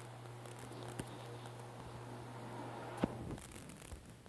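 Quiet room tone with a steady low hum, broken by two faint taps on a smartphone touchscreen: a light one about a second in and a sharper one about three seconds in.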